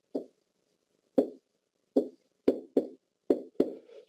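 Pen knocking on the surface of an interactive whiteboard while writing: about eight short, sharp taps at uneven intervals.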